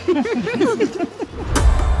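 A person's voice rising and falling in pitch for about a second, then a deep trailer bass hit about a second and a half in that carries on as a low rumble.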